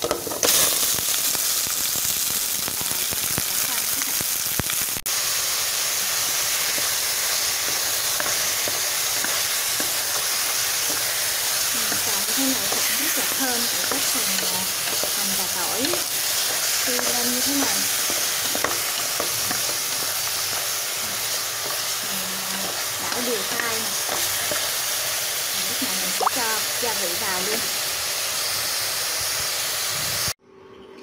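Pork pieces and minced garlic frying in hot oil in a pot: a loud, steady sizzle that jumps up sharply about half a second in and then holds.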